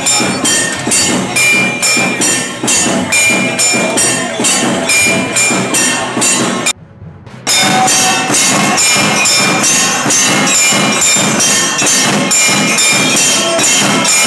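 Temple aarti music: metal bells and cymbals struck in a steady rhythm, about three strikes a second, with ringing high tones. It drops out for under a second about seven seconds in.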